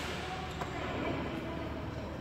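Badminton rackets hitting shuttlecocks, a few light knocks echoing in a large sports hall, one about half a second in and fainter ones after.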